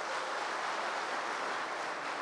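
Audience applauding: a steady, even patter of many hands clapping.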